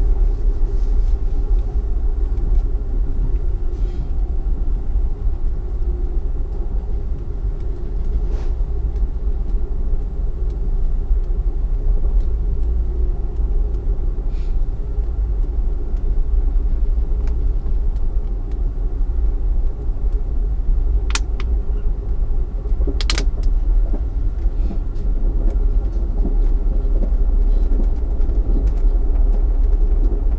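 Steady low rumble of an Amtrak Empire Builder passenger car riding the rails, heard from inside the car while under way, with two brief sharp clicks about two-thirds of the way through.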